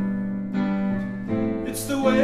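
Electronic keyboard playing sustained piano chords between sung lines. The held chord fades, and a new chord is struck about a second and a half in.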